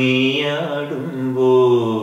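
Solo male voice singing unaccompanied in Carnatic style. One long held note bends in pitch about half a second in, then settles and holds: part of a phrase in raga Abhogi.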